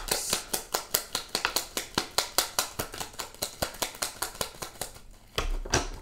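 Tarot cards being shuffled by hand: a fast, even run of light card slaps, about eight a second, that stops about five seconds in, followed by a louder rustle of the cards near the end.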